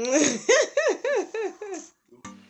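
A person laughing in a run of about seven quick, high-pitched laughs that fade out near the end.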